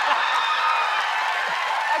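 Studio audience cheering and applauding, with whoops and voices in the crowd.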